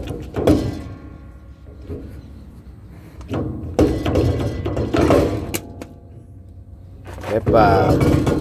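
Irregular metal knocks and scrapes as a semi-trailer wheel hub is rocked and pulled outward on its axle spindle, with a single sharp click about five and a half seconds in.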